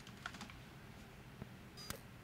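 Faint typing on a computer keyboard as a password is entered: a few quick keystrokes about a quarter second in, another near the middle, and a sharper click near the end.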